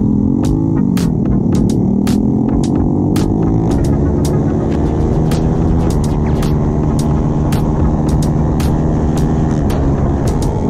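Motorcycle engine pulling under acceleration, its pitch climbing steadily and then dropping at gear changes about six seconds in and near the end.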